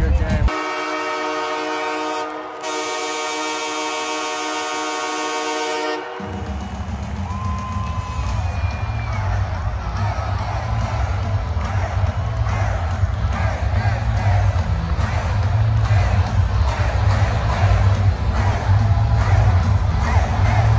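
An ice-hockey arena goal horn sounds a loud, steady chord for about five and a half seconds, dipping briefly near the middle; it marks a goal. Then the crowd cheers over loud goal music with a heavy bass beat.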